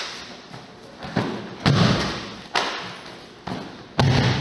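Judoka landing on a judo mat during a rolling throw: a run of dull thuds about a second apart as feet and bodies hit the mat. The heaviest thud comes a little before halfway.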